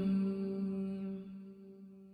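Male voice chanting an Arabic supplication, holding the closing note of the line ('ar-Raheem') on one steady pitch as it slowly fades away.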